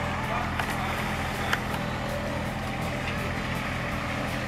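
Small engine of a golf range ball-picker vehicle running steadily as it tows a gang of ball-collecting baskets across the grass, a steady low hum. A light click about a second and a half in.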